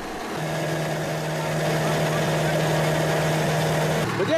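Daedong DSC48 combine harvester's diesel engine running with a steady hum while it discharges threshed grain into sacks. The hum swells up over the first second or so, then holds even.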